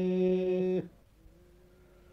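A male Aromanian folk singer holds one long, steady note at the end of a phrase. The note stops about a second in, leaving a brief pause.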